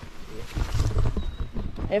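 Low rumbling buffeting on a handheld camera's microphone, with scattered rustling, loudest through the middle second.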